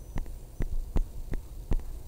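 Five light taps, about a third of a second apart, from a stylus on a tablet's touchscreen during handwriting, over a low steady hum.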